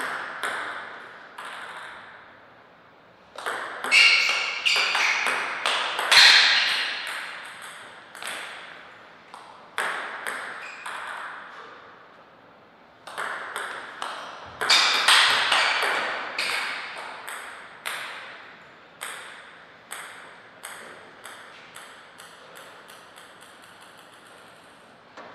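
Table tennis ball clicking off the table and the players' bats. The hits come in two quick rallies about ten seconds apart, with a few single bounces between them, each hit ringing briefly.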